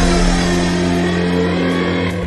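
Slowed-down, reverb-heavy music holding a steady low chord.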